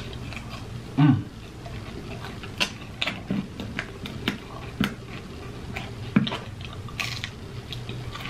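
Close-up chewing of a fried mozzarella stick: wet mouth clicks and smacks at an uneven pace, with a short low hum about a second in.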